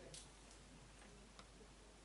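Near silence: room tone, with two faint clicks, one just after the start and one about a second and a half in.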